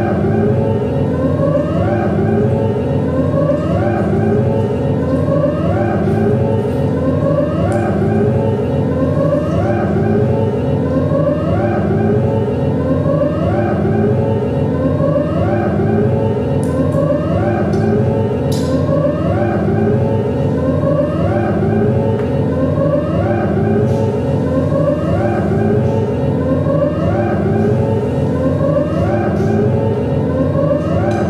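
Electronic music: a dense steady drone overlaid with a rising, siren-like glide that repeats about every second and a quarter without a break.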